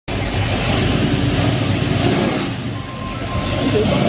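Big-block V8 of a Chevy Silverado pickup running hard and loud, with a heavy low exhaust rumble that eases off about two and a half seconds in.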